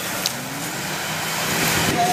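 Steady outdoor street noise like a traffic rumble, with one sharp click about a quarter second in, growing louder in the second half.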